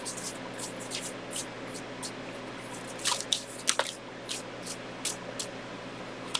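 A deck of tarot cards being shuffled and handled by hand: scattered, irregular soft clicks and flicks of card stock, a little stronger about halfway through.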